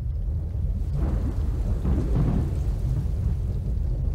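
Deep, steady low rumble from the soundtrack of an animated title sequence, swelling up about a second in.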